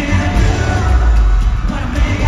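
Live pop-rock band playing loudly over an arena sound system, electric guitars over heavy bass, with singing.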